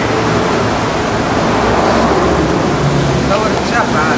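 A loud, steady rushing noise with people's voices over it, a few words near the end.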